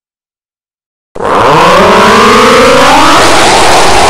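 After a second of silence, an extremely loud, heavily distorted blast of sound starts suddenly, with several tones gliding slowly upward through a harsh wall of noise, like an over-amplified 'earrape' edit.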